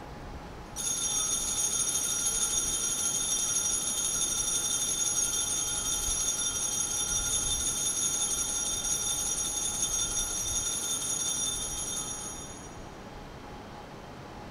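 Altar bell ringing continuously at the elevation of the consecrated host. It starts suddenly about a second in and rings steadily with bright high tones for about twelve seconds, then fades out near the end.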